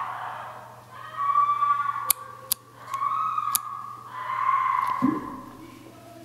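A teenage girl shrieking in the flat upstairs, heard muffled through the ceiling: three long, high, held screams, with a few sharp knocks between them.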